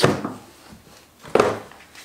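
Sealed waterproof hard rifle case being sat on and pulled open: two short rushes of noise, one right at the start and one about a second and a half in, as air is forced past the lid's seal.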